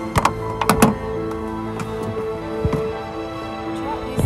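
Background music of steady held notes, with a few sharp knocks in the first second.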